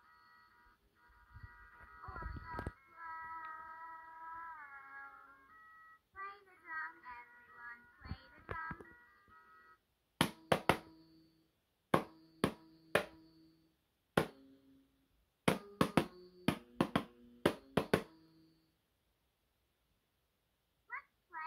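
A LeapFrog Learning Drum toy plays a stepped electronic tune through its small speaker. About ten seconds in, its plastic drum pad is tapped a dozen or so times in quick irregular groups, each tap sounding a short electronic note.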